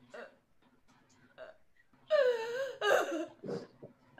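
A person's wordless vocal sound about halfway in: a strained cry with a wavering pitch lasting under a second, then a short rough grunt.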